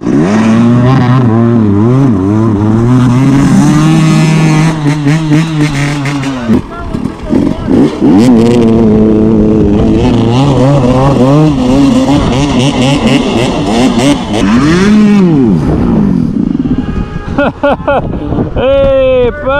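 Dirt bike engines revving up and down repeatedly, loud throughout, with a rise and fall in pitch about fifteen seconds in.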